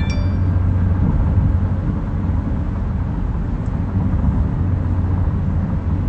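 Steady low rumble of road and engine noise inside a car's cabin, with a brief high chime ringing right at the start.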